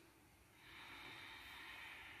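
A person's faint, slow breath, an even airy hiss lasting about two seconds and starting about half a second in, drawn during a yoga breathing cue.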